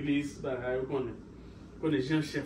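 A man talking excitedly in speech the recogniser did not transcribe, with a short pause near the end.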